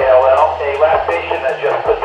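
Speech received over a 2-metre FM ham radio and heard from the transceiver's speaker. The voice is narrow and tinny, cut off at the lows and highs, with a steady low hum beneath it.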